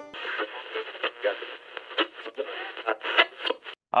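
A voice thinned to a narrow band, like an old radio or telephone, with some crackle. It cuts off abruptly just before the end.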